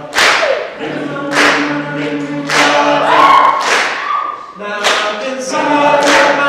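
All-male a cappella group singing in close harmony, low voices holding sustained chords under the melody, with a sharp percussive hit about once a second.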